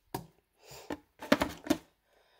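Handling noise close to the microphone: a few short clicks and knocks, with a cluster of them in the second half, as a sticker card and the camera are moved by hand.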